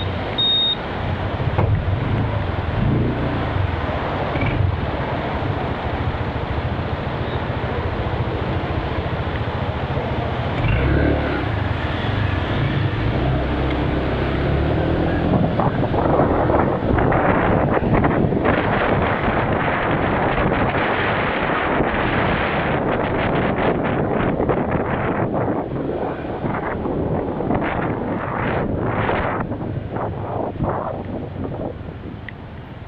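A motorbike riding through city traffic, heard from the rider's camera: a steady low engine drone mixed with road and traffic noise. Wind buffets the microphone, growing rougher and more fluttering in the second half.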